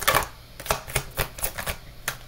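A deck of tarot cards being shuffled by hand: a run of quick, irregular clicks and snaps of the cards, about four or five a second.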